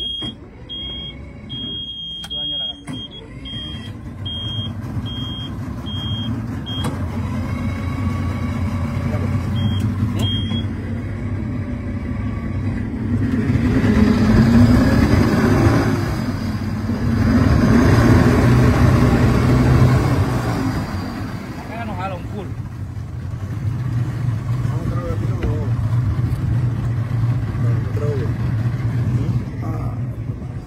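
Boat's twin Yamaha 200 outboard motors starting and running. A high-pitched warning beep sounds on and off for about the first ten seconds, while the engines' low drone builds, is loudest in the middle, eases briefly and picks up again.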